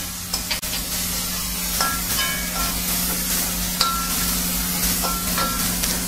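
Tomato and chilli masala sizzling in oil in a kadai while a metal spatula stirs it, scraping and clicking against the pan a few times.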